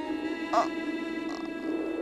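A steady, sustained music drone, over which a man cries out twice in short, hoarse, breathy bursts.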